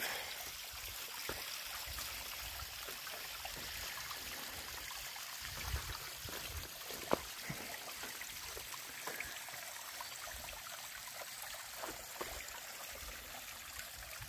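A small mountain creek running steadily, a faint even rush and trickle of water. A couple of short taps come a little after the middle, likely footfalls on the rocky trail.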